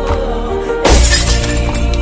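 Glass shattering, loud and sudden a little under a second in, with high tinkling fragments for about a second after, over background music.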